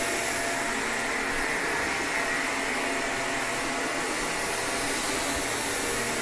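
Shark Apex upright vacuum cleaner running steadily as it is pushed over carpet: a rush of air from the motor with a thin, high whine over it.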